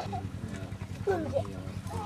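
Soft background voices, talking in short phrases quieter than the interview speech around them, over a low steady hum.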